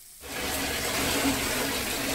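Shower spray running in a tiled shower stall: a steady hiss of falling water that swells up in the first half second and then holds.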